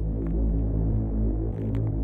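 Deep, held synth bass notes of a 1990s makina dance track, muffled, with no highs, in a breakdown before the full beat comes back in.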